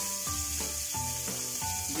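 Whole anchovies frying in hot oil with garlic and green chillies in a stainless steel pan: a steady sizzle as the fish crisp, with forks stirring and turning them in the pan.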